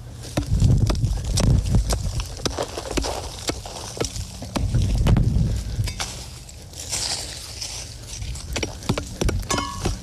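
A long-bladed hand shovel digging a trap bed in dry field dirt and crop stubble: repeated chopping strikes and scrapes of the blade, with heavier thuds about a second in and again around five seconds, and a hissy scrape of loose dirt near seven seconds.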